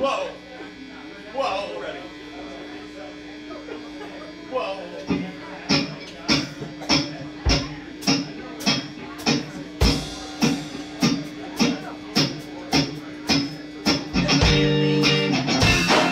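A live rock band starting a song. A steady low hum sits under a quiet opening, then a regular beat of sharp strokes, about one and a half a second, sets in about five seconds in. The full band comes in louder near the end.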